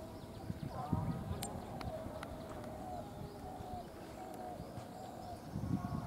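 Faint voices of cricket players calling across an open ground, with a few sharp clicks in the first half and a low rumble that grows louder near the end.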